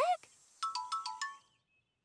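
A short run of about six quick chime-like notes that step down in pitch, a cartoon musical sound effect.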